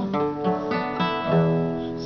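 Classical guitar played as an accompaniment, plucked chords and notes ringing on one after another.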